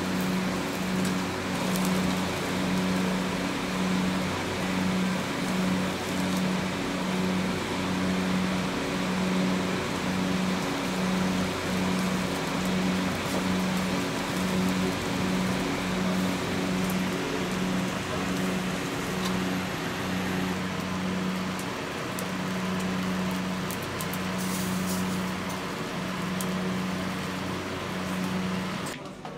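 Steady hiss and crackle of meat skewers grilling over a charcoal fire, under a low hum that pulses on and off about twice a second.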